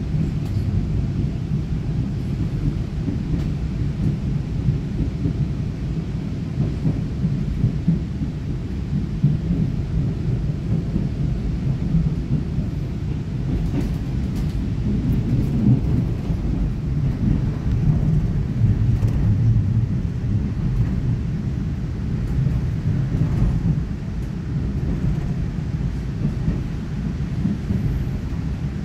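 Steady low running rumble of a moving EMU900 electric multiple unit, heard from inside the passenger car: wheels on rails and running gear.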